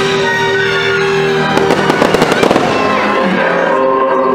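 Fireworks show music playing loudly, with a quick run of firework crackles and pops between about one and a half and two and a half seconds in.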